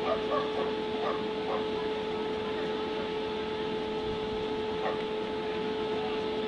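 Steady outdoor background noise with a constant high-pitched hum, and a few faint distant voices.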